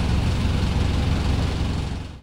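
Cabin noise inside a London double-decker bus: a steady low rumble from the running bus, fading out at the very end.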